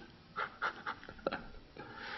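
A man's soft, breathy chuckle: a few short puffs of breath through the nose and mouth, quieter than his speech.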